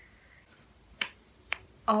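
Two sharp finger snaps about half a second apart.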